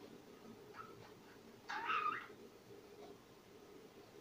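A budgerigar gives a single short, harsh squawk about two seconds in, with a faint chirp a second earlier.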